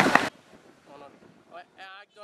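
Loud outdoor commotion of voices and sharp cracks during a police baton charge, cut off abruptly about a third of a second in; after that only faint voices.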